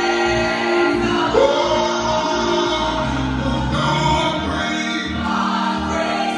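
Two women singing a gospel song into microphones, with held accompanying chords underneath.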